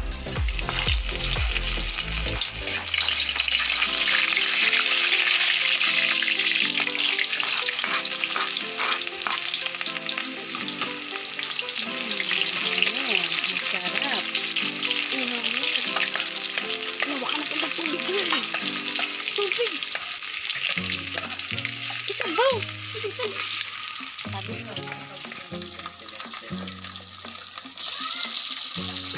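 Chopped onion and garlic sizzling in hot oil in an aluminium wok, with a metal spatula scraping and clicking against the pan as they are stirred.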